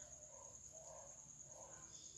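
Near silence: faint background with a thin, steady, high-pitched pulsing tone and a few faint soft sounds.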